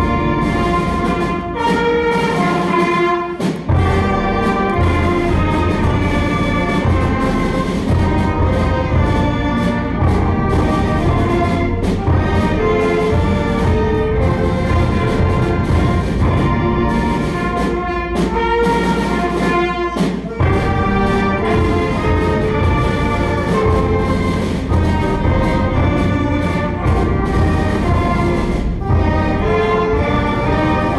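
School concert band of woodwinds, brass and percussion playing an arrangement of a French sacred piece from the 1600s–1700s, written to open the mass, in full held chords.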